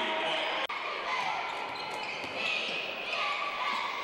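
Gymnasium crowd voices with a basketball bouncing on the hardwood court. The sound drops out sharply for an instant under a second in.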